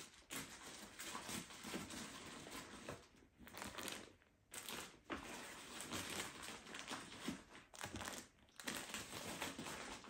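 Plastic clip-lock bags of rolled clothing crinkling and rustling as they are handled and pushed into a suitcase, in irregular spells broken by a few short pauses.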